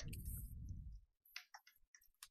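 A low handling rumble fading out over the first second, then three small, sharp clicks, as of a felt-tip marker being handled over paper.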